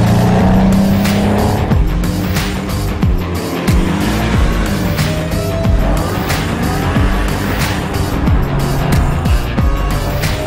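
Porsche 718 Boxster GTS turbocharged 2.5-litre four-cylinder boxer engine running as the cars drive past, its pitch sweeping up and down, mixed under music with a steady beat.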